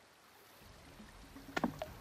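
Shallow creek water running over rocks, faint at first and fading in after a near-silent start, with a couple of short sharp clicks near the end.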